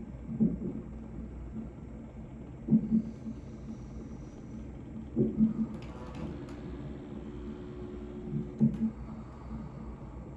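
A woman in labour breathing heavily through a contraction, blowing out a breath roughly every two and a half seconds, with a short hummed moan near the middle, over a steady low hum.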